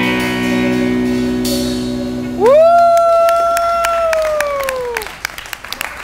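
A rock band's final chord rings out on electric guitar and bass with a cymbal crash. About two seconds in, someone lets out a long, high whoop that swoops up, holds and falls away, and the audience begins clapping.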